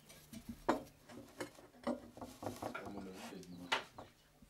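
Handling noises of clay sculpture parts being fitted together on a stand with a metal rod: a sharp knock about a second in and another near the end, with a run of lighter knocks and scrapes between.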